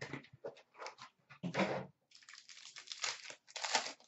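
Hockey card pack wrappers crinkling and tearing as packs are opened by hand, with cards rustling, in short irregular bursts that are loudest about one and a half seconds in and again near the end.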